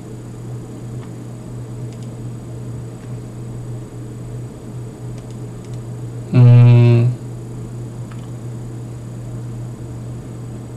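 A steady low hum throughout, with one loud, buzzy, flat-pitched tone lasting under a second about six and a half seconds in.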